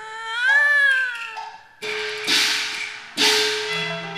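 A drawn-out, wavering Cantonese opera vocal line. Then, about two seconds in, the accompanying ensemble comes in with two percussion crashes a second and a half apart over sustained instrument notes.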